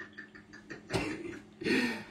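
A man's laughter dying away in short pulses, then a cough about a second in and a short laughing breath near the end.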